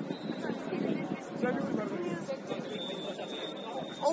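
Indistinct voices of football players calling and chattering across the pitch.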